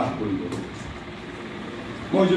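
A man's voice finishing a word through the microphone, then a pause filled with steady, even background noise.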